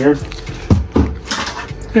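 A white plastic fermentation bucket holding about a gallon of water is handled and set down. It makes two dull thuds close together a little under a second in, then a brief swish.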